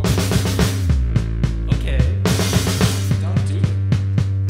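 Indie rock band playing live, the instrumental opening of a song: a drum kit with regular kick and snare hits over sustained guitar tones, with cymbals coming in about two seconds in.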